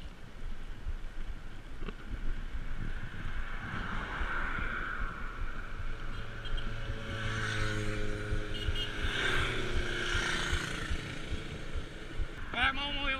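Wind buffeting a bicycle-mounted action camera as the bike rolls along a road, with a car passing from about half-way through: its engine hum and tyre noise swell, are loudest about two-thirds of the way in, and then fade.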